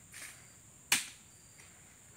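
A single sharp knock about a second in, ringing briefly, over soft rustling and a faint steady high insect buzz.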